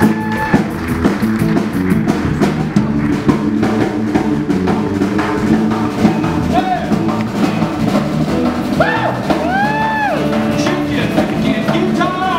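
Live rock and roll band playing with a steady drum-kit beat. A few long notes bend up and fall back about two-thirds of the way through.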